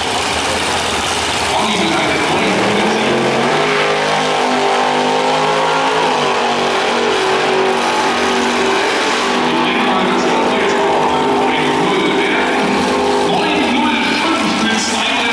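Ford Anglia drag car launching and accelerating hard down the drag strip, its engine note climbing in steps.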